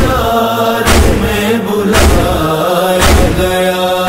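Noha, a Shia lament, performed by voices alone: a long sustained vocal chant between the lyric lines. Under it runs a steady beat of deep thumps about once a second, the matam-style chest-beat rhythm that carries a noha.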